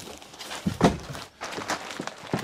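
Knocks and rustling from a lift-up camper twin bed being lowered and its plastic-wrapped mattress handled. There are a few short knocks, the loudest about a second in.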